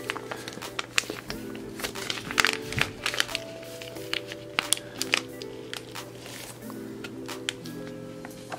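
A foil pouch of lip gloss base crinkling and crackling in gloved hands as it is squeezed, over background music with held chords.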